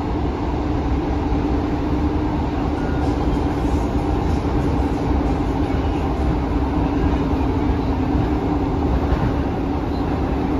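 Inside a Class 150 Sprinter diesel multiple unit running at speed: a steady rumble of wheels on rail under the drone of the underfloor diesel engines, with a steady low hum.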